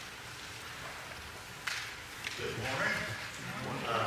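Quiet room sound with a sharp click about a second and a half in, then indistinct voices murmuring over the last second and a half.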